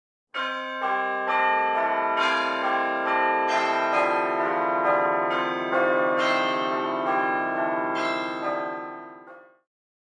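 Bells ringing a run of notes, struck about twice a second, each note ringing on over the next; the ringing fades away shortly before the end.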